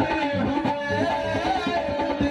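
Qawwali music: a harmonium holding steady reed chords over a quick pattern of hand-drum strokes.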